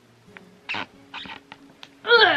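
Fleece blanket rustling in a few short swishes as it is pulled over a person crouching down, the loudest swish a little under a second in, over a faint steady hum.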